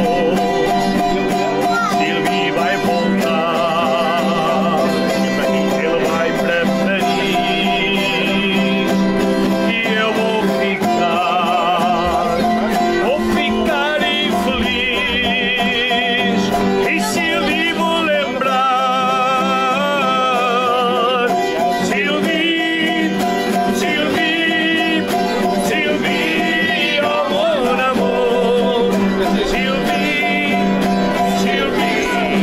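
Portuguese folk song played on two classical guitars and a cavaquinho, strummed and plucked, with a voice singing a wavering, vibrato-laden melody over the chords.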